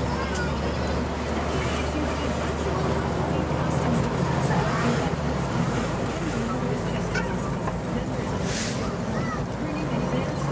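Diesel engine of a 2014 Seagrave Marauder fire engine running while the truck is driven, its low note dropping and changing about four to five seconds in. A short hiss comes about eight and a half seconds in.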